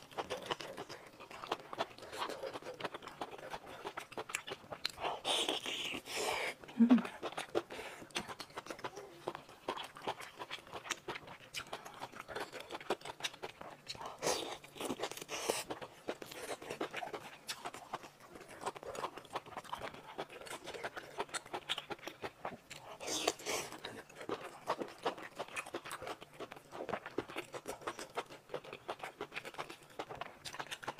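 Close-miked chewing and wet mouth sounds of someone eating lobster meat, a steady run of small clicks, with a few louder bursts of the gloved hands handling the lobster shell along the way.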